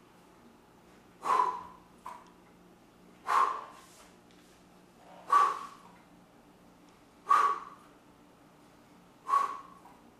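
A man's sharp, forceful exhalations, one with each dumbbell shrug: five of them, about two seconds apart.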